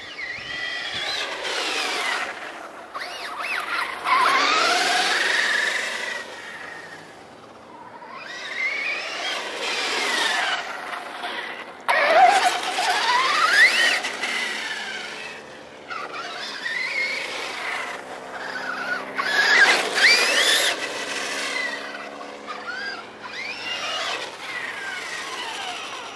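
Traxxas Stampede 4x4 VXL RC monster truck's brushless electric motor and gears whining on a 3-cell 11.1 V LiPo, sweeping up and down in pitch as the truck accelerates and slows. There are about five surges of speed, with quieter gaps between them.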